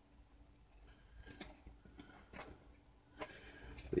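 A few faint, scattered clicks of hand work on the loose fan mounting bolts inside a 3D printer's electronics enclosure.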